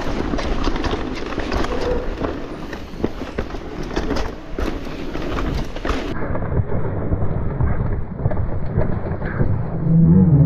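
Mountain bike riding down a rooty dirt trail, heard from a camera on the bike: steady wind rumble on the microphone, tyre noise and the rattle and knocks of the bike over roots and bumps. The sound turns duller about six seconds in.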